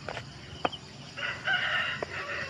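A rooster crowing: one loud call beginning a little past halfway through, preceded by a couple of brief clicks.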